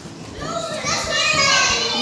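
Children's voices, chattering and calling out. Quieter at first, they grow louder about half a second in.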